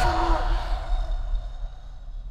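A woman's short, strained gasping cry as she is suffocated under a plastic bag, dying away within about half a second, over a deep low rumble that fades toward the end.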